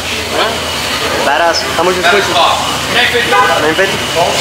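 Voices of people talking nearby, no clear words, over a low steady background hum.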